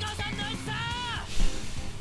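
Anime episode soundtrack: background music under a high character voice calling out, then a sudden thump about one and a half seconds in.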